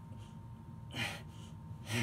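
A man's sharp, strained breaths from hard physical effort, two of them about a second apart, the second the louder. A steady low hum runs underneath.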